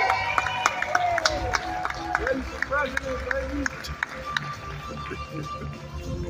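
Music playing under shouting voices and scattered hand claps from an audience; the clapping thins out after a few seconds.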